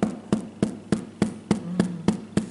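A rapid, even series of sharp taps on a hard surface, about three a second.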